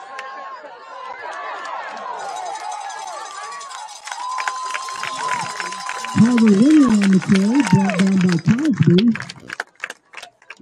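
Football crowd cheering and yelling, many voices at once, during and just after a play, with scattered claps. About six seconds in, a man close by shouts loudly for about three seconds.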